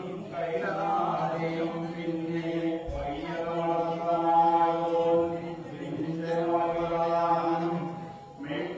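A group of male voices chanting a Poorakkali song in unison, holding long notes.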